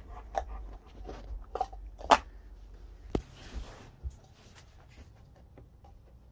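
Husky nosing through upturned paper cups on a carpet, knocking them over: a run of light knocks and papery rustles, the loudest about two seconds in, dying down after about four seconds.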